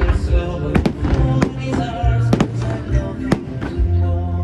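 Aerial firework shells bursting in sharp bangs, about six of them, some in quick pairs, over music playing with held notes and a steady low bass.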